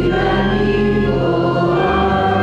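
A hymn sung by voices in a church with organ accompaniment, held chords over steady low organ notes.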